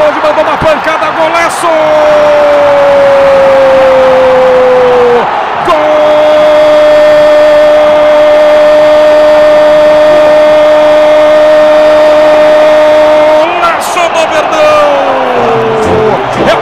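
Football commentator's long, held goal cry ("gooool") over the broadcast sound: one sustained note sliding slightly downward for about three seconds, a quick breath, then a second held note for about eight seconds before the voice breaks back into speech near the end.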